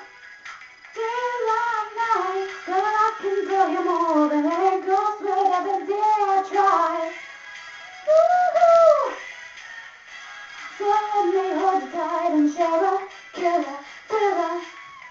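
A woman singing wordless vocal phrases into a microphone, in three runs. The middle run is a short swoop up and back down, and it is the loudest.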